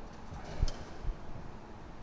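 Quiet room ambience with a single faint, sharp tap a little over half a second in and a softer one shortly after.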